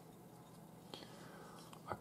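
Near silence: quiet room tone with one faint, brief sound about halfway through, and speech beginning right at the end.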